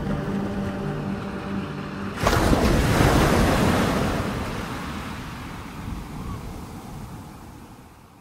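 The last held chords of a deep house track, then about two seconds in the sudden rush of an ocean wave breaking that slowly fades away.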